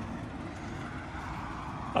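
Steady background hiss and low rumble of outdoor ambience, with no distinct events.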